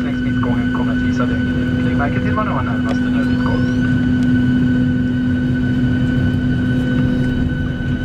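Steady cabin hum inside a Boeing 737-600 on the ground: a strong low drone with several fainter, higher steady tones from the running aircraft's engines and air system.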